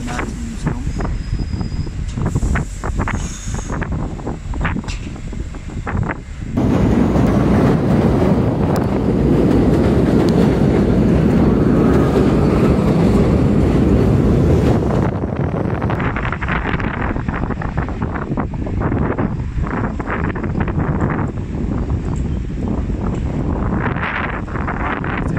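Gusty wind on the microphone with street noise, then, about six seconds in, a sudden loud, steady rumble of a train on the elevated subway tracks overhead. The rumble lasts about eight seconds before dropping back to windy street noise.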